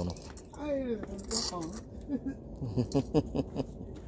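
Wordless human voice: one long sound falling in pitch, then several short bursts of laughter.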